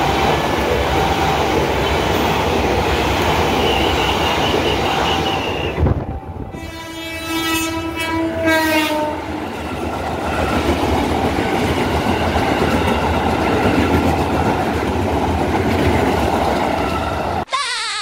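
Electric commuter trains passing close by on the rails, with a loud, steady running rumble of wheels and motors. About six and a half seconds in, a train horn sounds for two or three seconds, falling slightly in pitch.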